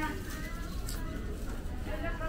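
Busy supermarket ambience: shoppers' voices in the background over a steady low hum, with a short click about a second in.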